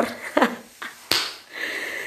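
A woman's short laugh, then a single sharp click about a second in, followed by a faint hiss near the end.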